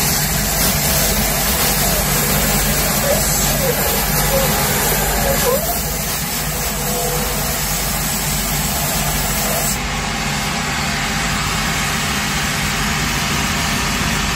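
A shoe repair finishing machine running steadily while a boot's sole is ground against its abrasive wheel, taking off the old crepe rubber. Its high hiss thins a little about ten seconds in.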